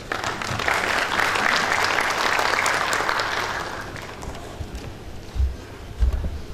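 Audience applauding in a large hall, building over the first second and fading away about four seconds in. A couple of low thumps follow near the end.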